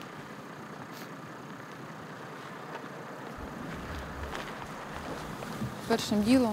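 Steady outdoor background noise, like wind, with no distinct events, growing slightly louder; a low rumble joins it about three seconds in.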